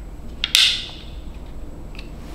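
A plastic click as a wide-angle lens attachment is snapped onto a small DJI gimbal camera about half a second in, a sharp snap with a short fading scrape after it. A lighter click comes near the end.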